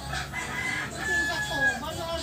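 A rooster crowing: one drawn-out call whose high note holds level for most of a second in the middle.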